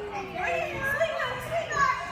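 Young children's voices calling and babbling, mixed with adults talking.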